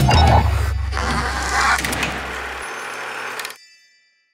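Short sound sting for an animated logo: swishing noise over a held low bass note, ending with high bell-like tones that ring briefly and fade out after everything else cuts off, about three and a half seconds in.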